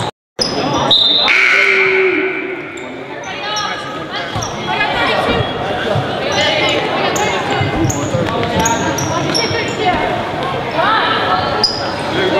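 Basketball bouncing on a hardwood gym floor among short high sneaker squeaks and echoing crowd chatter. The sound cuts out completely for a moment just after the start.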